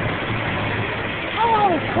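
Steady rushing, rumbling noise of skating along the rink's boards, with a short falling vocal sound about one and a half seconds in.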